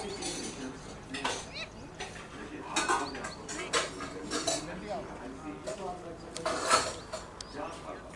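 A cricket bowler and fielders shouting an appeal, mixed with several sharp clinks and knocks.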